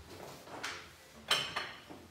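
Oven door pulled open and a stoneware baker taken off the metal oven rack: a soft swish, then a single sharp clunk a little over a second in.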